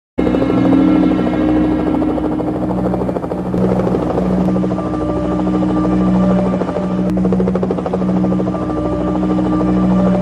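Helicopter running overhead: a steady, loud droning hum with a fast rotor pulse.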